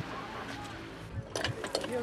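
Street background with faint voices, then a man's voice starting about a second and a half in.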